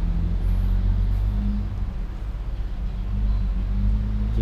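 A steady low rumble and hum, with no sudden sounds.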